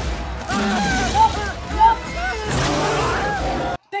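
Movie soundtrack of a lion-attack scene: a loud, noisy din with a low rumble and many short rising-and-falling cries over it, cutting off suddenly just before the end.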